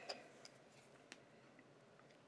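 Near silence, broken by three faint, sharp clicks in the first second or so as hands work thread and a bobbin at a fly-tying vise.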